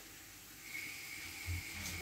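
Sliced onions sizzling softly in hot oil in a frying pan. A faint steady high whine comes in under a second in.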